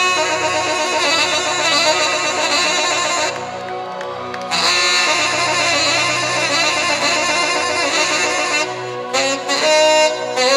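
Tenor saxophone playing a live solo of quick runs and wavering notes over the backing band's bass and drums. The sax drops back briefly about four seconds in, then comes in again.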